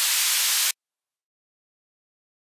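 A steady wash of white noise, strongest in the highs, closing out an electronic psytrance track. It cuts off suddenly under a second in, leaving dead digital silence.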